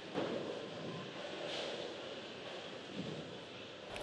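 Low, steady background noise of a bowling centre hall, with faint swells and no single clear event.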